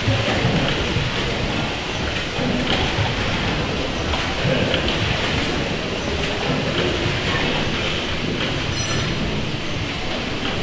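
James Kay steam engine running steadily, a continuous churning clatter of its crank, valve gear and moving rods. A brief high-pitched squeak comes near the end.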